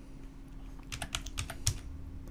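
Computer keyboard keystrokes typing a number, a quick run of clicks about a second in.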